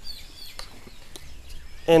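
Birds chirping in the background: several short, faint, high-pitched calls, with a couple of light clicks in between.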